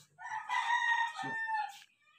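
A rooster crowing once: one long call of about a second and a half that dips in pitch at the end.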